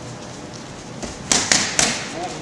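Boxing gloves striking focus mitts: three quick, sharp punches in the second half, within about half a second.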